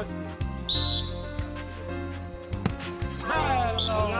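Referee's whistle: one short, high blast just under a second in and a briefer one near the end, over steady background music and voices.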